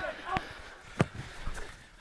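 A football kicked on a grass pitch: a sharp thud about halfway through, with a softer knock before it, and players calling out faintly.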